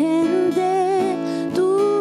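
A woman singing slow, long-held notes into a microphone, accompanied by a strummed acoustic guitar.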